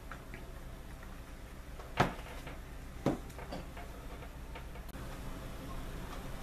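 Plastic Nesco dehydrator trays knocking as a tray loaded with corn kernels is stacked onto the others: a sharp click about two seconds in, a softer knock a second later, and a few light ticks.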